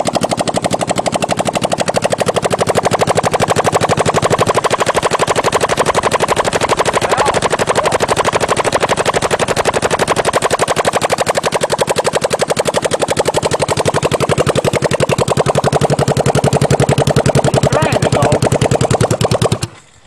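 Honda CB450 air-cooled parallel-twin engine running with no exhaust pipes fitted: a loud, rapid popping straight from the open exhaust ports. It cuts out suddenly near the end as the fuel primed into the carbs with a squeeze bottle runs out.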